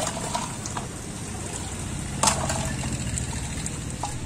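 Liquid sloshing and splashing as a plastic scoop is worked through a plastic cooler bucket of iced coconut drink, with a short clatter about two seconds in.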